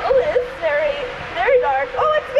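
High-pitched squeals and laughs, a rider's voice in short wordless cries, while riding down an enclosed dark water slide.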